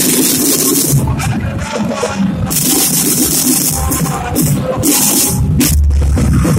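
Procession drum band playing: several hand-carried drums, snare and bass types, beaten together in a busy rhythm, with bright rattling cymbal-like sound washing in and out over the beat.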